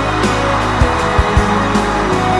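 Instrumental passage of a Mandarin pop ballad: sustained keyboard or string chords over a drum beat, with a hissing swell through the first second or so.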